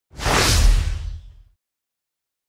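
Whooshing swell with a deep boom under it, fading away over about a second and a half, the kind of sound effect that brings on an intro title card.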